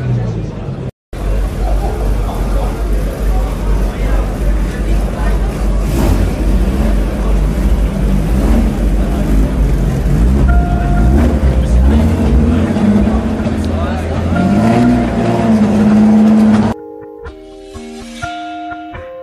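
Car engines and exhausts running and revving as cars drive off through an echoing underground car park, with crowd chatter. Near the end it cuts off suddenly to music with plucked guitar.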